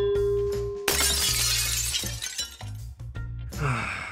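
Cartoon sound effect of an anvil landing: a metallic clang that rings on one pitch, cut off about a second in by a loud shattering crash that dies away over the next second. Background music plays throughout.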